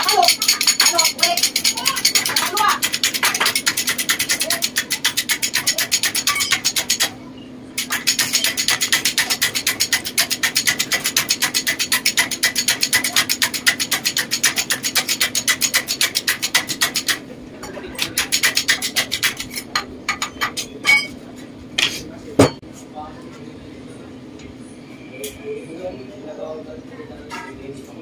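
Shop-made hydraulic tube bender worked by a red bottle jack, its pump clicking rapidly and evenly, several strokes a second, as it presses a pipe into the die; it pauses briefly about seven seconds in and stops around seventeen seconds. After that come scattered metal clinks and one sharp knock a little past twenty-two seconds as the bent tube is handled in the frame.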